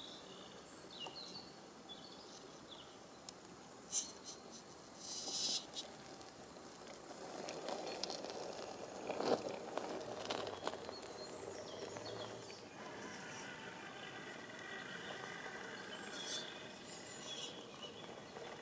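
An RC rock crawler working over rock: faint motor and gear whine with tyres scrabbling and small knocks, the sharpest knock about nine seconds in, over a background of insects chirping.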